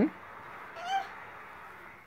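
A woman's short rising "hmm?", then about a second in a brief high-pitched squeal from a baby.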